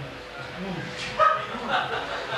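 A person's voice making a few short wordless yelps and whines, one after another, heard through a microphone.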